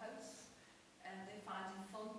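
Speech only: a woman talking, with a short pause about half a second in.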